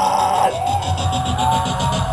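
Live rock band playing loud, distorted guitar holding a chord over bass and drums, with a fast run of drum hits in the second half: the closing bars of a song, starting to ring out at the very end.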